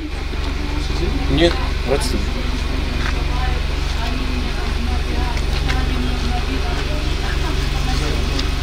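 Car engine idling steadily with a low, even hum, with faint indistinct voices over it.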